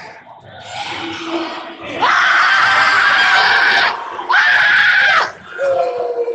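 A spectator in a gym gives two long, loud, high-pitched screams, the first lasting about two seconds, the second about a second, with cheering voices around them.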